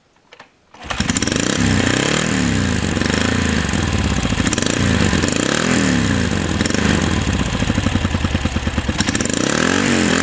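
Yamaha XS650 air-cooled parallel-twin motorcycle engine kick-started: it catches about a second in and runs loudly, with an uneven throb and the revs rising and falling over and over.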